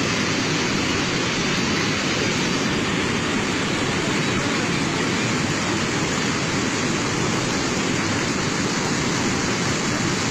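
Steady rushing of a muddy debris flow (flash-flood torrent of mud and rock) pouring down a mountainside, a loud constant noise without breaks.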